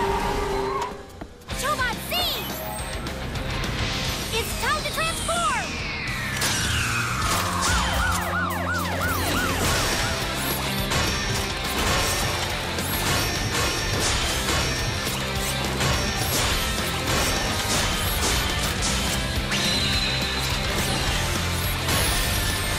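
Cartoon transformation sound effects over music: a long falling swoop and chirping whirs, then a steady run of mechanical clanks and hits as a police car turns into a robot.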